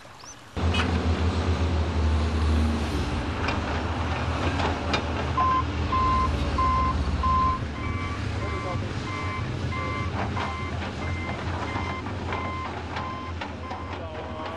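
Tracked excavator's diesel engine running under load, with a few knocks of the machine at work. From about five seconds in, a warning alarm beeps about twice a second, later switching between two pitches.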